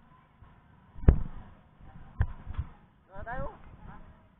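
A sharp thump about a second in, the loudest sound, followed by a smaller click and thump about a second later, then a brief voice.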